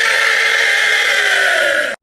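A loud, harsh, heavily distorted noise blast with a tone sliding slowly downward through it, cutting off abruptly near the end: a deliberately overdriven meme sound effect.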